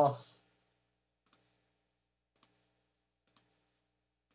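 Three faint, single clicks about a second apart, from a computer mouse as menu items are picked.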